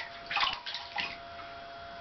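Bathwater splashing lightly around a small child sitting in a tub: a few small splashes within the first second, then only gentle water movement.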